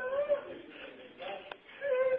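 A man's voice crying out in distress: a drawn-out rising and falling cry at the start and another near the end, with quieter sounds in between. A single sharp click comes about one and a half seconds in.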